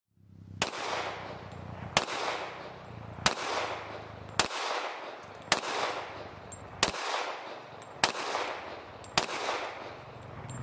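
Eight single shots from a Sig Sauer 1911 pistol in .45 ACP, fired at a steady pace of about one every second and a quarter, each followed by an echo that fades over about a second.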